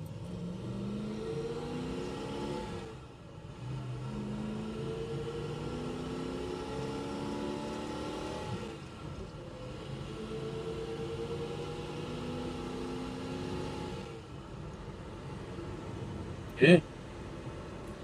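A 1966 Plymouth Barracuda Formula S's 273 V8 heard from inside the cabin, pulling up through the gears of its four-speed manual. The engine note rises, drops at a shift about three seconds in, rises again, drops at another shift around nine seconds, then pulls once more and eases off to a steady cruise.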